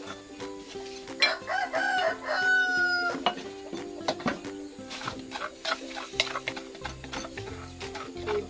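A rooster crows once, starting about a second in and lasting about two seconds, over steady background music. Light clicks and scrapes of a utensil in a metal cooking pot come through the music.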